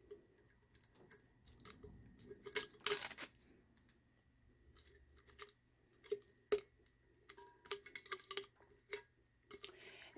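Tape and sublimation paper being peeled and pulled off a heat-pressed tumbler by hand: faint, irregular crackles and ticks, with a denser crackling stretch about three seconds in and a run of small ticks in the second half.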